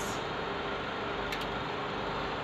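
Steady background hiss with a faint low hum, like a running fan or burner, and one light tick about two-thirds of the way through.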